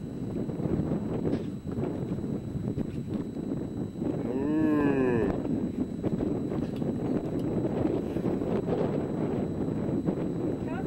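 A calf moos once, about halfway through: a single call of about a second that rises then falls in pitch. It sits over a steady low rumble of wind on the microphone.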